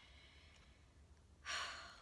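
Quiet room tone, then about one and a half seconds in a woman's short, audible intake of breath, fading over about half a second.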